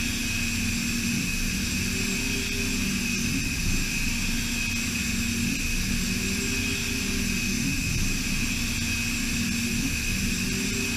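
DMG DMU 65 monoBLOCK five-axis CNC mill's spindle running at high speed as it cuts aluminium under flood coolant: a steady high whine over a lower machine hum, with the hiss of the coolant spray.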